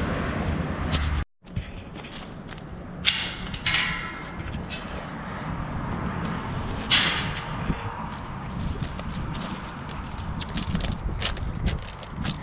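A few sharp, ringing knocks, about three seconds in and again near seven seconds: hammer-type pounding on a cold frame being built. They sit over footsteps on concrete and low outdoor rumble.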